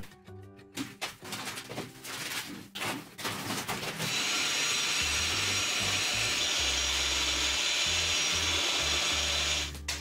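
Handheld twin-paddle electric mortar mixer running steadily in a bucket of cement-based adhesive, starting about four seconds in.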